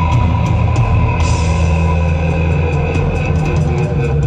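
Live rock band playing: electric guitar holding sustained notes over bass and drums, with steady short hits from the kit.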